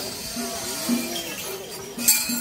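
Metal rings on the iron staffs (kanabō) carried at the head of a festival procession, jingling and clinking as the staffs are struck on the road, with voices under them.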